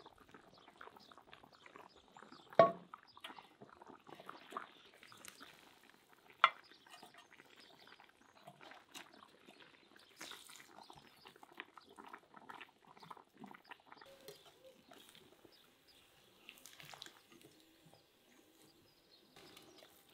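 Cooking sounds from a boiling cast-iron cauldron: a run of small clicks and light clinks, with two sharp knocks in the first seven seconds, as boiled meat and potatoes are lifted out with a metal skimmer onto a ceramic plate.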